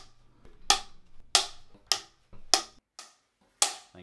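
A film clapperboard's hinged sticks snapping shut: five sharp wooden claps, a little over half a second apart, the last one after a longer gap.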